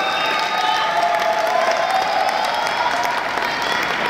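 Audience applauding steadily, a dense patter of many hands, with a few voices calling out among it.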